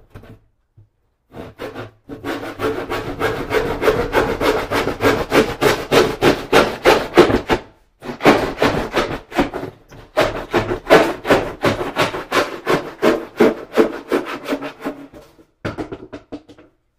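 Rapid back-and-forth scraping strokes, about four a second, in two long runs with a brief pause about halfway.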